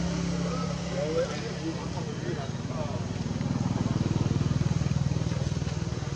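A small engine running steadily nearby with an even pulsing beat, growing somewhat louder about halfway through.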